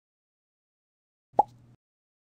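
A single short cartoon 'plop' sound effect near the end, a quick upward blip with a brief low tail, marking the animated frog hopping onto a lily pad.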